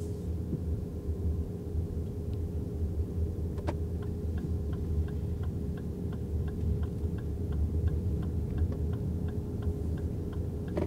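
Cabin of a 2024 Lexus RX350h hybrid rolling slowly: a low steady rumble with a faint steady hum. About four seconds in, after a single click, the turn-signal indicator starts ticking evenly, about three ticks a second, and stops near the end.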